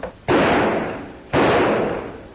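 Two pistol shots about a second apart, each sudden and loud with a long fading echo, as recorded on a 1930s film soundtrack.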